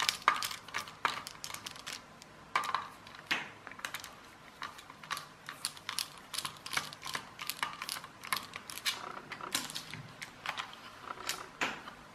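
Small screwdriver turning out screws from a plastic toy car's base: a run of small, irregular clicks and ticks, several a second.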